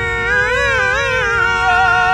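A husky howling along to a sung song: one long howl that swoops up and down in pitch, over a steadily held sung note.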